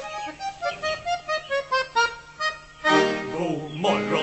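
Elka chromatic button accordion playing an instrumental break: a quick run of short, detached melody notes, then a held chord from about three seconds in.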